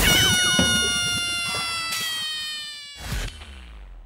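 Comic sound effect on a segment's title card: one long held note that slowly falls in pitch and fades over about three seconds, with a short burst near the end.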